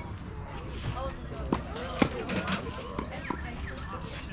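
Tennis ball struck by racquets during a rally: several sharp pops, the loudest about two seconds in, with voices talking in the background.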